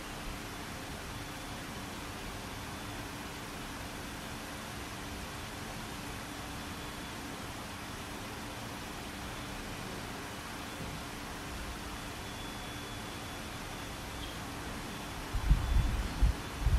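Steady hiss with a faint low hum: the background noise of the recording. A few low thumps come in near the end.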